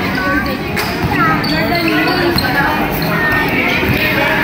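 A basketball being dribbled on a concrete court, a few sharp bounces heard over shouting and talking voices.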